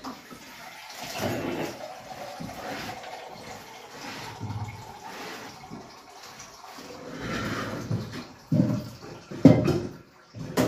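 Water running at a steel kitchen sink, with utensils clattering and a few sharp knocks near the end.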